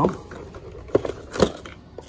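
Hands handling the plastic-and-cardboard packaging of the grip screws: a light crinkling with two sharp clicks, about a second and a second and a half in.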